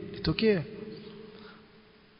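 A man's voice finishes a few words in the first half second, leaving a faint steady electrical buzz in the recording that fades away to silence near the end.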